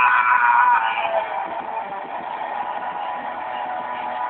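A funk band's recording: a voice cries out with a bending pitch in the first second, then held instrument notes ring on steadily.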